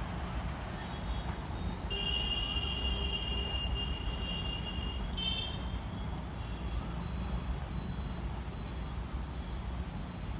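Vande Bharat Express electric trainset running away along the track, a steady low rumble. A thin high whine sounds from about two to five seconds in.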